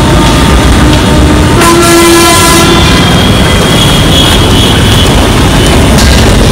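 Loud, steady rumble of heavy vehicle traffic close by, with a horn sounding for about a second starting about one and a half seconds in.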